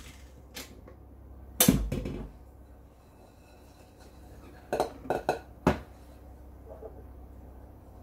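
Metal clanks and taps from a stand mixer being handled, its tilting head and metal whisk knocking against the stainless steel bowl: one loud knock about two seconds in, then a quick cluster of sharper taps around five seconds in.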